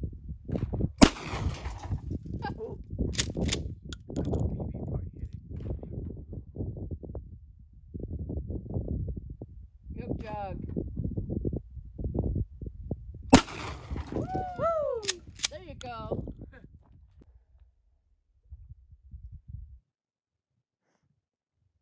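Two shotgun blasts about twelve seconds apart, each ringing out briefly. Each is followed about two seconds later by two quick clacks, the pump action being racked to chamber the next shell.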